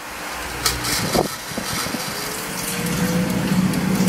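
A Kyowa KW-3815 air fryer starting up as its mechanical timer knob is turned to 20 minutes. A couple of clicks from the knob come first, then the fan motor's whirring hum builds and rises slightly in pitch as the fan spins up.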